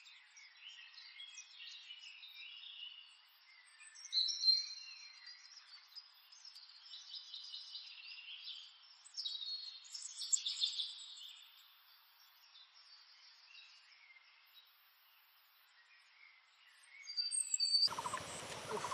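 Birds chirping and calling, a mix of short chirps and whistled notes, with nothing low in the sound. The loudest call is a whistle about four seconds in, and the calls thin out over the last several seconds.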